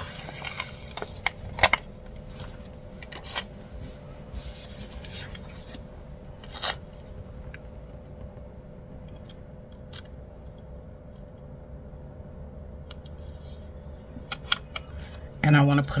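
Rustling and crinkling of a clear sticker being peeled off its backing sheet and pressed onto a paper planner page, with scattered small clicks and scrapes, busiest in the first seven seconds and sparser after.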